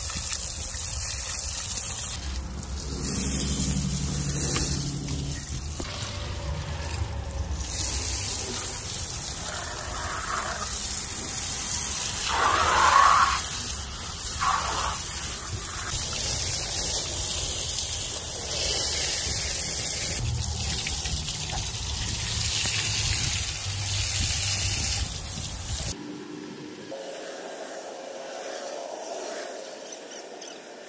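Garden-hose water spraying onto a Jeep's alloy wheel and body: a steady rushing hiss of spray, briefly louder about halfway through and dropping quieter near the end.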